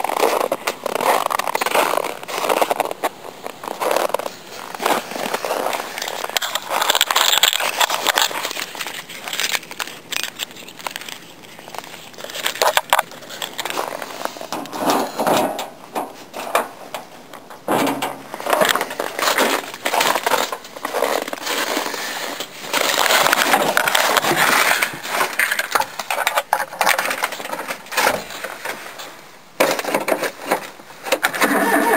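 Snow crunching and rustling in irregular bursts, as someone moves through deep snow, with pauses and a few sharp clicks.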